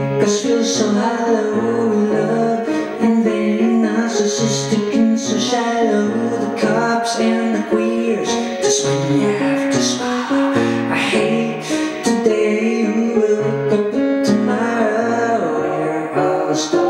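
Piano playing sustained chords over a moving bass line.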